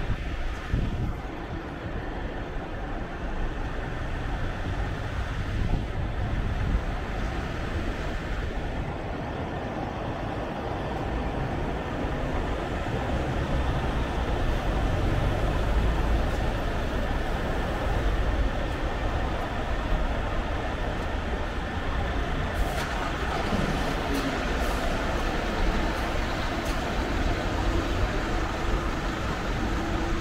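Street traffic and bus engines running: a steady low rumble under a hum of passing cars, growing louder about halfway through as a parked double-decker bus's engine runs close by.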